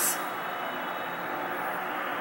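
Steady, even background noise with a faint high-pitched whine running through it; the tail of a spoken word ends right at the start.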